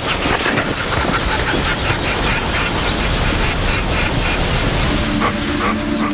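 Dense, rough scraping and rustling as a leopard climbs a tree trunk through leafy branches. Held low notes of music come in near the end.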